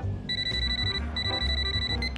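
Cartoon telephone ringing twice, a high trilling ring, each ring just under a second long with a brief gap between.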